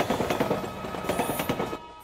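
A train running on the tracks, a dense rapid clatter that starts suddenly and fades toward the end.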